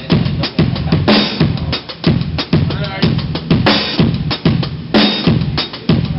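A drum kit played in a busy groove: dense, fast bass drum and snare hits over ringing drum tones, the recording dull with the treble cut off.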